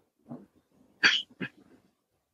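A pet animal calling twice in quick succession, short and sharp, with a fainter sound just before.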